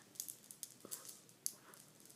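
A few faint, short clicks and light rustles, about one every half second or so, over a quiet room.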